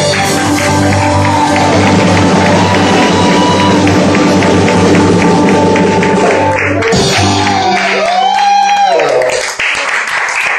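A small live band of keyboard, acoustic guitar, drum kit and saxophone plays the closing bars of a song, which ends about eight seconds in with a last bending note. Clapping and voices follow near the end.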